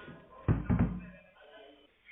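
A quick cluster of three or four knocks, heard over a telephone line with faint voices behind.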